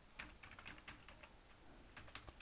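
Faint computer keyboard typing: a quick run of key clicks.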